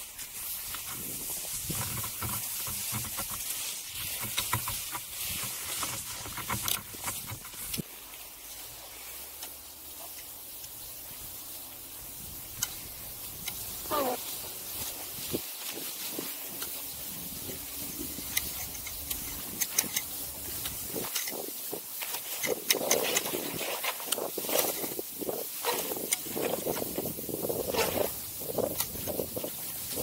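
Cross-country skis sliding over snow: an uneven scraping hiss broken by crunches and clicks, which grows rougher and louder over the last several seconds.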